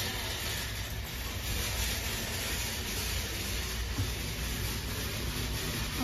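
Steady, even hiss over a low rumble: the background noise of a crowded shop.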